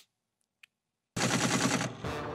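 About a second of near silence, then a sudden fast rattle of sharp percussive hits, about ten a second, opening the show's outro sting.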